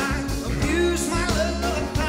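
Live rock and roll song: a man sings lead while playing a Telecaster-style electric guitar, with a band behind him.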